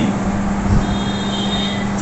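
Steady background noise with a low hum, heard in a pause between a man's sentences.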